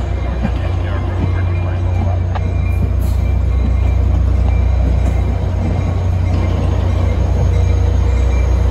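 Caltrain bilevel passenger cars rolling past close by: a loud, steady rumble of steel wheels on the rails, with a few short clicks in the first few seconds.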